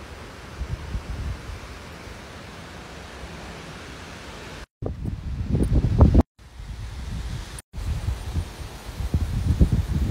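Wind buffeting a phone microphone, a low rumble with irregular gusts and a light rustle of leaves. The sound cuts out briefly three times, about halfway through, after about six seconds and near eight seconds.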